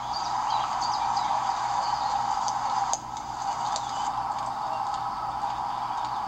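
Small birds chirping in short high calls over a steady background hiss. The level drops abruptly about three seconds in.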